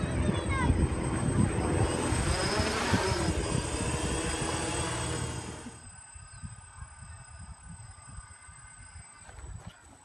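Quadcopter's electric motors and propellers buzzing in flight, the pitch gliding up and down as the motor speeds change. The sound is loud and rough for the first five seconds, then drops suddenly to a fainter, steadier buzz.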